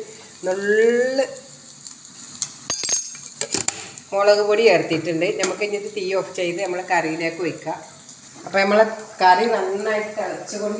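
Hot oil sizzling in a small pan of tempering for fish curry, with chilli powder and sliced vegetables being stirred by a metal spoon that clicks against the pan a few times about three seconds in. A voice talks over the sizzle for much of the time.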